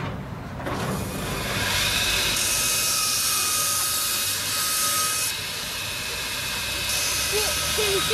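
A loud, steady hiss starts about a second in, swells briefly, and then holds, with a faint thin whistle running through it.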